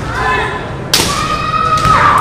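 Kendo bout: a sharp crack of a strike about a second in, followed at once by a long, high, held shout (kiai) lasting about a second.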